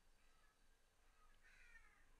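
Near silence: room tone, with a faint, brief falling tone near the end.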